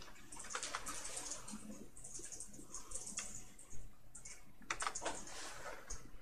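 Computer keyboard keys being pressed in short runs of quick clicks.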